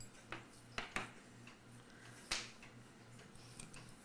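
A few light, scattered clicks of small metal clock parts and hand tools being handled and set down on a workbench, over a faint steady low hum.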